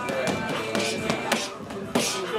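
Leather boxing gloves striking a round hanging heavy bag: several sharp slapping punches spaced through the two seconds, over background music and gym voices.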